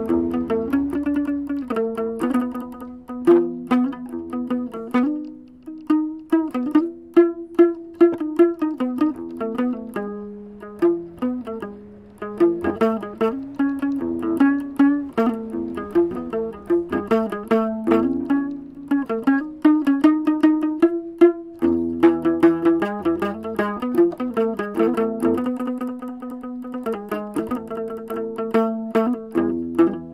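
Homemade chapei dong veng, a long-necked two-stringed Cambodian lute with nylon strings, plucked in a quick, continuous run of notes in a traditional folk melody.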